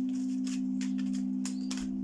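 Steady background drone of low sustained tones like singing bowls, with a higher tone joining after about a second and a half. Light clicks of a deck of tarot cards being shuffled in the hands sound over it.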